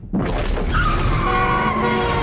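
Car-chase sound from a film trailer: cars running, with a long tyre squeal starting about a second in, slowly falling in pitch, over music.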